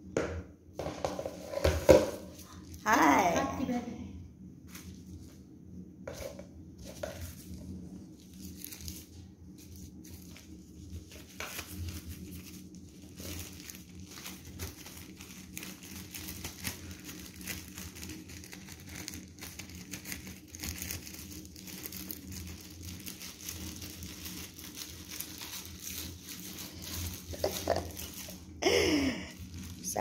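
Thin plastic crinkling and rustling in many small, irregular clicks, with a brief voice about three seconds in and again near the end.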